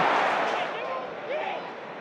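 Football stadium crowd noise dying away after a goalkeeper's save denies the home side, with a few individual voices rising briefly over it.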